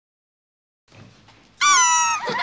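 Rubber duck squeeze toy giving one loud, high squeak that falls slightly in pitch, starting about one and a half seconds in after near silence.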